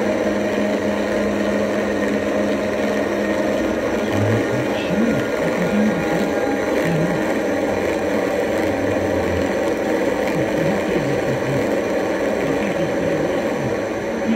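Quadrivium Orbital Synthesizer software synth playing a dense, steady, noisy drone over a held low hum, with small wavering low chirps coming and going from a few seconds in.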